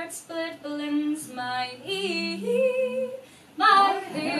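A woman's solo voice singing a traditional Scottish ballad unaccompanied, in long held notes that glide between pitches, with a short pause for breath near the end before the next phrase.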